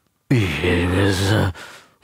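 A man's drawn-out, breathy vocal sound, low in pitch and lasting a little over a second, starting shortly after a brief silence.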